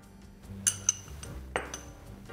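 A metal spoon clinking against a glass mixing bowl a few times, the sharpest pair just under a second in, over steady background music.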